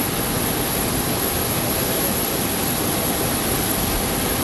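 Steady, even rush of jet aircraft noise with no breaks, cutting off abruptly at the end.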